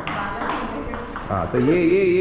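Table tennis ball being struck by paddles and bouncing on the table during a rally: sharp light clicks, one at the start and another about half a second in.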